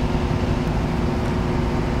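Steady hum of a ventilation fan: an even rushing noise with a low, unchanging drone.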